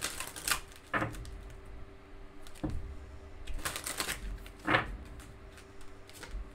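A deck of oracle cards being shuffled by hand: irregular clacks and rustles as the cards slap together, coming in a few clusters, with the sharpest clack near the end.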